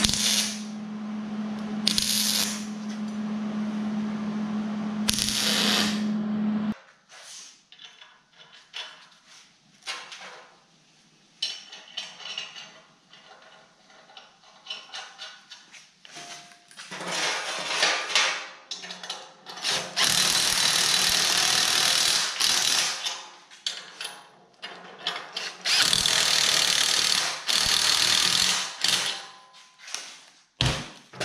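Wire-feed welder arc crackling over a steady hum for about seven seconds, stopping abruptly. After a stretch of light clicks and handling of steel parts, a cordless impact driver runs in three bursts of a few seconds each, tightening bolts on a steel bracket.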